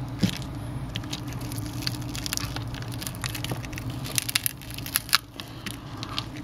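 Shattered screen glass and adhesive of a Galaxy S5 crackling and clicking as the broken display is handled and lifted from the phone's frame, many small irregular clicks over a steady low hum.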